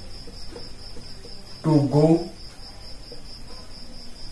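A steady, high-pitched insect trill: one continuous, finely pulsing note that goes on unbroken, with a man's voice briefly over it near the middle.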